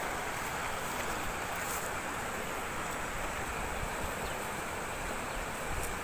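Steady wind rushing over the microphone outdoors, an even noise with no clear events in it.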